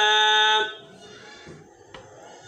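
A male Quran reciter's voice holding a long, steady drawn-out vowel in chanted Arabic recitation, cut off about half a second in. A pause with faint background hiss follows, with a small click near the end.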